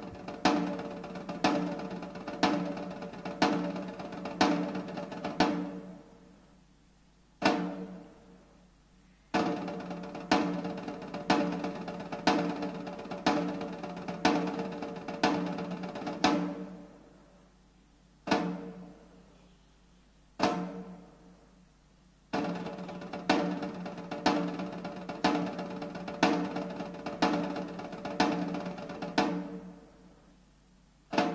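Slow, evenly spaced single strokes on a military side drum, about one and a half a second, each ringing out. They come in runs of about ten, broken by pauses of a few seconds with one or two lone strokes.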